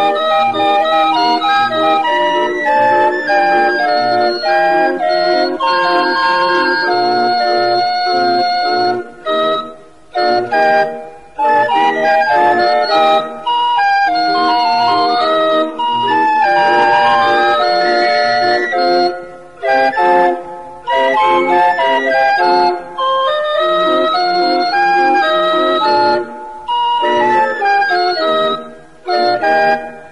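Hand-cranked barrel organ (organillo) playing a tune in steady held notes, with several brief breaks in the sound.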